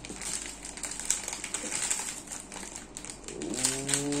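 Foil Lego minifigure blind bag crinkling in the hands as it is pulled open, in a run of small crackles. A short hummed voice tone comes in near the end.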